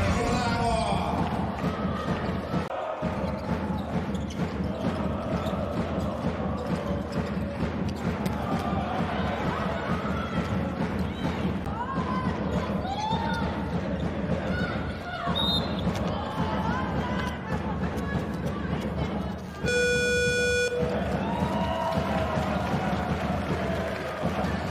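Handball match sound in an arena hall: the ball bouncing on the court amid crowd noise. About twenty seconds in, the final buzzer sounds once for about a second, a steady low tone that marks the end of the match, and the level rises afterwards.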